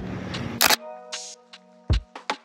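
A camera shutter clicks once, a little before a second in, followed by a short hiss; then background music with steady chords and a low thump near the end.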